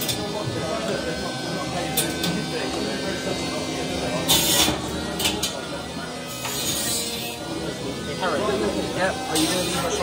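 Antweight horizontal bar spinner combat robot's weapon spinning with a steady electric hum, then striking an old robot frame about four seconds in with a short clattering burst, followed by a couple of sharp knocks.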